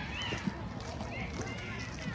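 Distant high-pitched voices of softball players calling out and chattering on the field, over a steady outdoor rumble.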